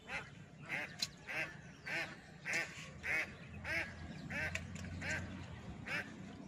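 A duck quacking over and over, a short nasal call about every half second to second.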